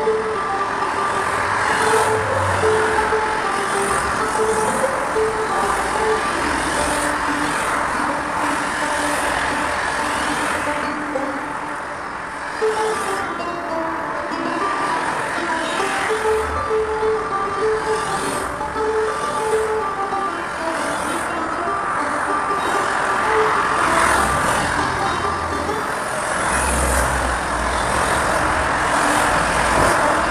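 Steady road traffic noise from passing vehicles, with a simple tune of short held notes playing over it.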